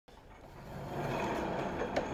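Wooden sliding stall door rolling open along its overhead track, a steady rumble that builds over the first second, with a sharp click near the end.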